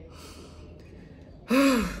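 A woman's soft breath in, then near the end a short, loud voiced sigh whose pitch rises and falls.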